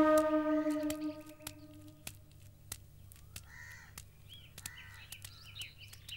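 A sustained wind-instrument note from the film's background music fades out over the first two seconds. Then, in quiet outdoor ambience, a bird gives a few short cawing calls with higher chirps among them, and there are scattered faint clicks.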